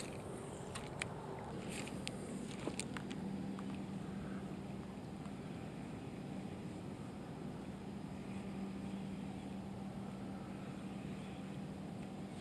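A few light clicks of a spinning reel and rod as a lure is cast, then a faint, steady low hum through the retrieve.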